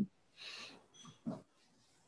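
Faint breath taken near the microphone, followed by a couple of small mouth sounds.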